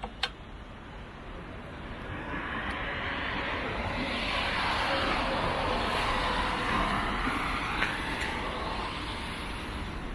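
A vehicle passing on the road: its noise swells over a few seconds and then fades away. A sharp click comes right at the start.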